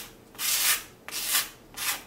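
A hand tool rubbing and scraping across fresh premixed grout on concrete, smoothing it over a wire groove, in three short rasping strokes.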